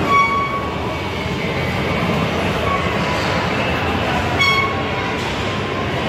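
Steady rumbling din of a busy shopping-mall atrium with escalators running. Three brief high-pitched tones sound over it: one at the very start, one near three seconds and one at about four and a half seconds.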